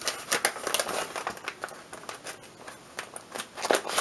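Paper packaging rustling and crinkling as it is handled and opened by hand: a run of crisp crackles that thins out midway and picks up again briefly near the end.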